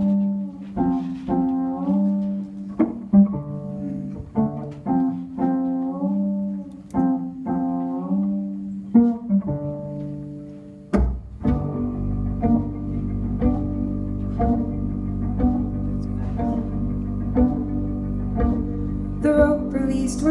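Live folk band's instrumental break between verses. Picked string notes, one after another, give way about halfway through to a bowed low drone with fiddle and held notes above it.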